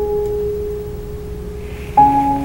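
A single mid-range piano note struck once and left ringing steadily for about two seconds, with a faint overtone above it; a new, louder chord is struck right at the end.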